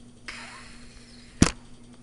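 Handling noise as the webcam or laptop is grabbed: a brief rustle, then one sharp knock about one and a half seconds in.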